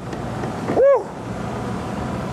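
Steady wind and boat noise on an open sport-fishing boat at sea, with one short voiced exclamation about a second in.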